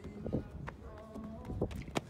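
Running footfalls of a high jumper's approach on a rubber track, a few sharp strikes spaced unevenly, the last and loudest near the end at takeoff, with faint voices behind.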